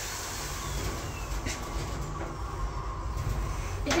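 Kone passenger lift car travelling between floors, heard from inside the car: a steady low rumble and hum from the ride.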